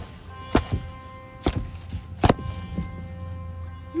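Spade blade cutting into the fibrous base of a banana pup: a series of sharp crunches, the loudest about two seconds in.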